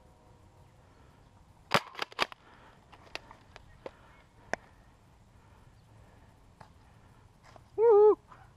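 Sharp plastic clacks and pops of a foam dart blaster: three loud ones in quick succession about two seconds in, then several fainter clicks. A short wavering vocal call sounds right at the end.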